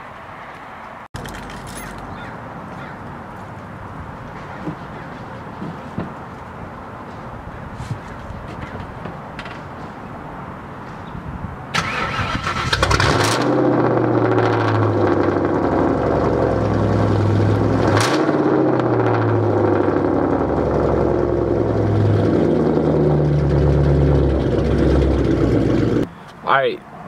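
A 1996 Ford Mustang GT's V8 engine starting about twelve seconds in, then running loudly with its pitch rising and falling as it is revved. Before it starts there is only a steady low background noise.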